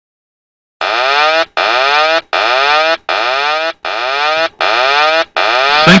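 An aircraft cockpit warning alarm: a loud electronic tone repeating seven times, each tone under a second long and sliding up in pitch at its start, after a second of dead silence. The synthetic 'sink rate' callout of the ground-proximity warning system follows at the very end.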